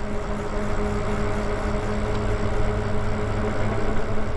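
Electric bike riding at a steady cruise: the motor gives a steady, unchanging whine over a low rumble of wind and tyre noise.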